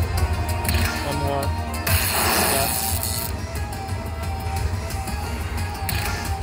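Dollar Storm slot machine playing its bonus-round music and sound effects as the reels spin, with a loud rushing burst of noise about two seconds in that lasts just over a second.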